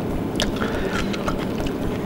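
A metal fork clicking lightly against a plate as a piece of baked lamb is speared and lifted, with one distinct click about half a second in and a few fainter ticks, over steady low background noise.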